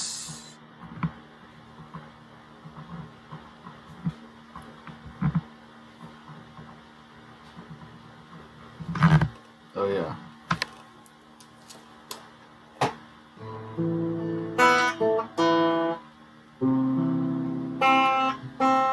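Electric guitar played clean: after a long quiet stretch of small handling clicks, chords and picked notes ring out from about three-quarters of the way in, with a brief pause before the next phrase.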